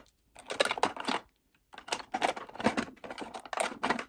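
Plastic makeup tubes and pencils clicking and clattering against each other and a clear acrylic drawer organizer as they are put in and arranged. The clicks come in two quick runs, with a short pause about a second and a half in.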